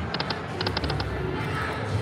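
NFL Super Bowl Link video slot machine's reel-spin sound: a run of short, quick electronic ticks while the reels spin, with music under it.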